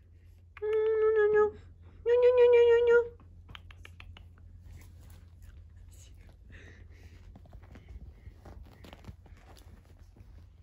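Two high, steady, voice-like tones, each a little under a second long, the second slightly higher and louder. After them come faint scattered patters and rustles of a puppy's paws on a quilted cushion.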